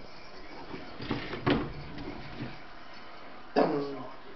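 A sharp thump about a second and a half in, with a few softer knocks around it, then a brief voice near the end.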